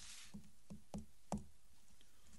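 Four short, light knocks a few tenths of a second apart, the last one the loudest, after a brief hiss at the start.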